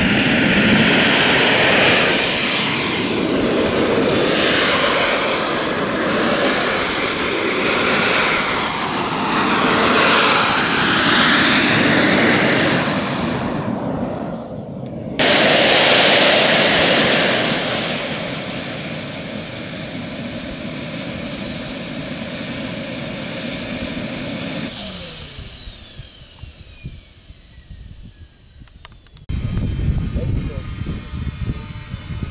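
Small model jet turbine engine running on the ground: a loud rushing exhaust with a high whine that rises and falls repeatedly for the first dozen seconds. It then settles to a steadier, lower run. Near the end the whine glides steeply down and the sound dies away as the turbine winds down.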